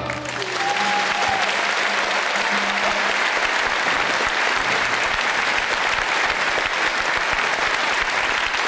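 Audience applauding steadily, starting as the band's music ends, with a few faint held tones in the first seconds.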